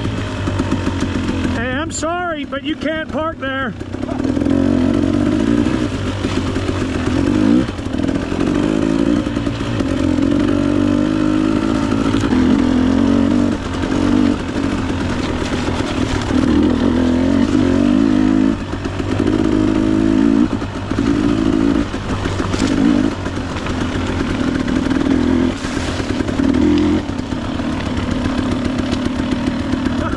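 Dual-sport motorcycle engine worked hard through deep mud, the throttle opened and eased off every second or two so the revs keep rising and falling.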